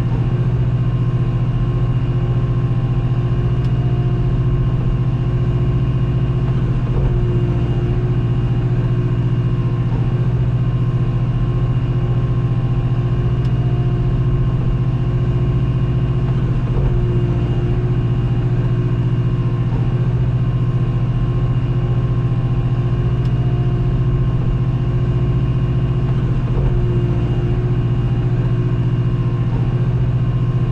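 Skid steer engine running steadily, heard from inside the cab as the machine carries a full bucket of dirt, with a strong, even low hum.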